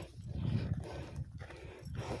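Footsteps crunching on dry dirt and gravel while walking up a slope, over an uneven low rumble.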